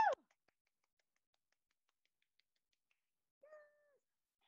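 The tail of a woman's shouted "woo" cheer cuts off right at the start, then near silence. Near the end a brief, faint, steady-pitched sound drops away at its close.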